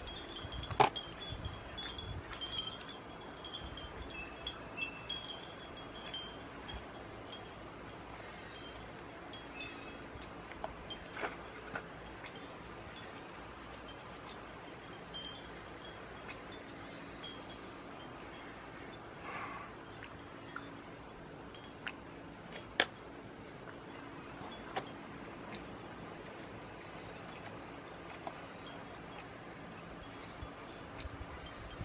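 Wind chimes tinkling on and off, mostly in the first ten seconds, over a steady outdoor background. A few sharp clicks come as the glass pieces are handled.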